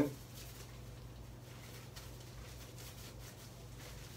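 Faint, soft rubbing of bare hands working hand sanitiser gel over palms, fingers and thumbs, over a steady low hum.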